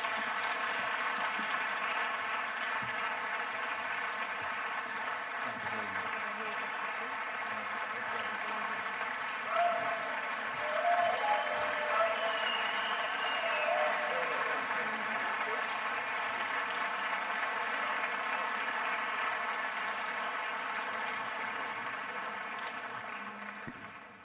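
Large audience applauding steadily, with a few voices calling out briefly in the middle, the applause tapering off near the end.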